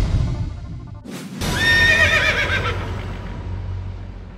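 Logo sting: a brief swish just after a second in, then a horse whinny sound effect with a wavering pitch over fading music, dying away slowly towards the end.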